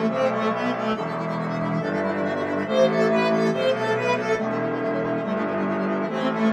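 Instrumental hip-hop beat in an epic style: sustained orchestral strings and brass over a soft drum pattern, the chord changing about every second or two.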